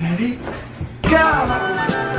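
Background music. It comes in louder with a steady beat about a second in.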